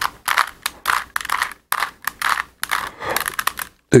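Rubik's cube being twisted quickly by hand: a run of plastic clicks and rattles in several quick bursts as the faces turn, undoing a pattern back to the solved state.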